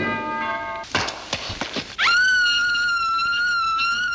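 Old film soundtrack: a short held chord, then a few crashing knocks, then about halfway in a single long high note that swoops sharply up and holds steady for about two seconds.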